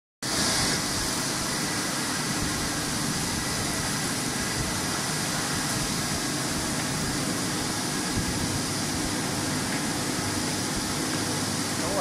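Automatic date washing machine running: a steady, even machine noise from its rotating brush rollers and spray nozzles, starting abruptly just after the start.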